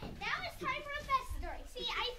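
Speech only: a child's voice speaking.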